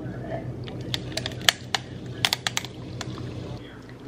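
Carbonated sparkling water poured from a can over ice cubes in a glass. Sharp, irregular clicks and cracks of the ice run through the pour, over a steady low hum.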